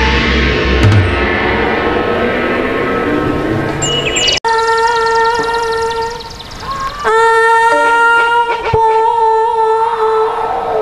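Live troupe music: a wind-instrument melody holding long notes over drumming and percussion. About four and a half seconds in the sound cuts out for an instant, and after it the held wind-instrument notes carry on with little drumming under them.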